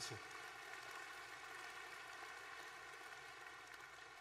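Audience applauding, a steady, faint, even patter of many hands clapping that holds until the speech resumes.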